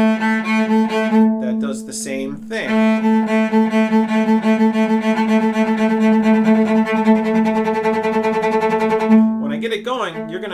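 Cello played with the sautillé bow stroke: fast, short, springing bow strokes repeating the note A. There is a brief pause about two seconds in, then a long run of strokes until near the end.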